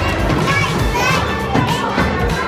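Children's voices at play over background music with a steady beat.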